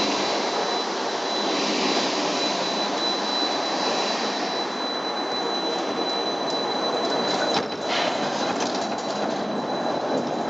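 The rail car of Genoa's Via Balbi–Castello public lift running along its curved track, a steady rolling noise with a thin high whine held throughout. A few clicks and a brief dip in loudness come about three quarters of the way through.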